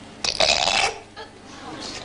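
A person's loud, breathy vocal outburst lasting about half a second, starting about a quarter second in.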